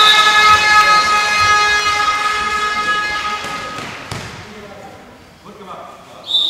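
A horn sounding one long, steady note with a buzzing, many-harmonic tone. It is loudest at the start and fades out about four seconds in.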